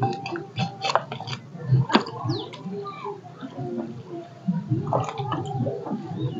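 Wet ground spice paste being scraped by hand off a flat grinding stone and gathered into a steel bowl: soft wet squishing, with a run of sharp clicks in the first two seconds.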